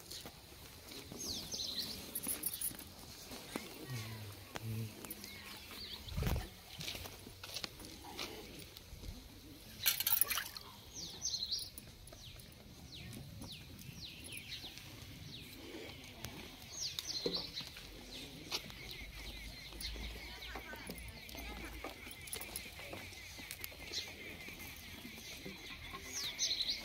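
Quiet farmyard sounds: a bird gives short, high chirping calls every several seconds, with occasional knocks and faint low sounds in between.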